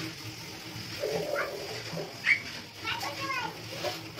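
Children's voices in the background: short high-pitched calls and chatter coming and going, about a second in, again after two seconds and around three seconds.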